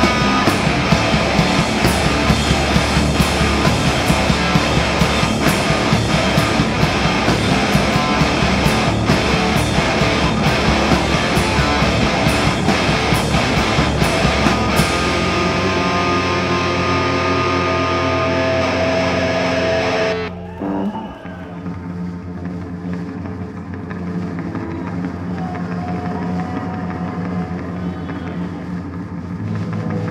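A loud heavy rock band plays live, with distorted electric guitars, bass and drum kit. About halfway through the drums stop and held guitar chords ring on. The song then cuts off about two-thirds of the way in, leaving a low steady amplifier hum and faint ringing notes.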